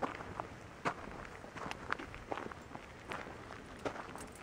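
Footsteps on sandy, gravelly dirt: irregular sharp scuffs, the strongest about once a second with lighter ones between.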